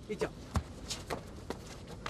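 Feet tapping and scuffing on stone paving as martial artists step and kick, about four short taps spread over the two seconds, after a brief spoken word.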